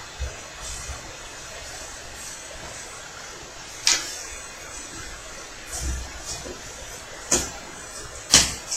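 Playing cards being handled and set down on a playmat-covered table: a few short sharp taps, the two loudest about four and seven seconds in, over a steady background hiss.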